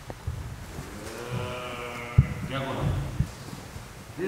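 A man's drawn-out call, held for over a second, with dull thumps of bare feet stepping and stamping on a wooden sports-hall floor as a group of karateka moves through stances; the sharpest thump comes about two seconds in.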